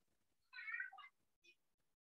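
A faint, high-pitched cry lasting about half a second, starting about half a second in, followed by a very brief faint chirp.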